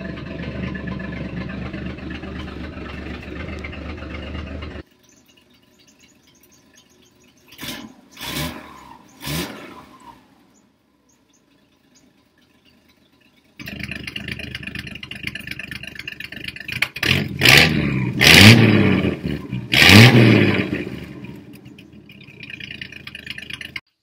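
Old six-cylinder engine of a Ford pickup with a homemade exhaust cutout, idling steadily. After a short break with a few clatters, it idles again and is revved sharply three or four times near the end, the pitch rising and falling with each rev.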